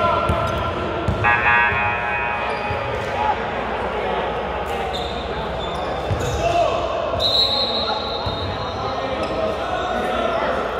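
A basketball bouncing on an indoor court, with players calling out in a large, echoing gym. A brief high-pitched tone sounds about seven seconds in.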